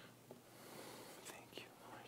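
Near silence with the faint rustle and a few soft clicks of missal pages being turned, the sharpest clicks near the end.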